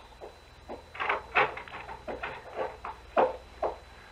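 Footsteps as a radio-drama sound effect: a row of short steps, about two a second, as someone walks to a closet and back.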